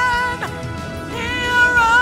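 A woman singing solo into a handheld microphone. A held note with vibrato ends in a falling slide about half a second in, and after a brief dip a new note swells up about a second in and is held.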